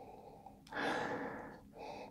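A man sniffing a glass of beer held to his nose: one long nasal breath starting a little before a second in and fading, then a short second sniff near the end.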